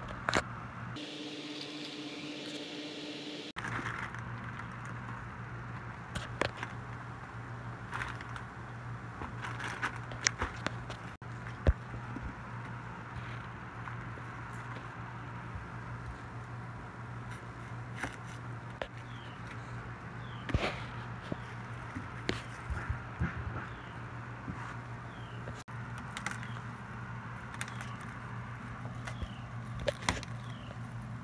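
Scattered small clicks and knocks of food preparation: a knife cutting sausage against a metal boil basket and pot, and garlic cloves handled on a wooden table. A steady low hum runs underneath.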